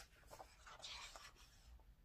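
Faint paper rustle of a glossy page being turned in a large book, lasting about a second, with a couple of light ticks just before it.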